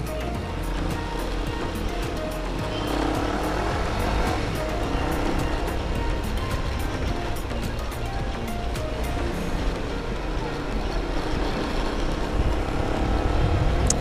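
Motorcycle engine running steadily at low road speed, with a constant rush of wind and road noise.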